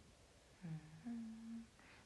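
A young woman hums two short notes with her mouth closed, a lower note and then a higher one, like a pensive "mm-hm".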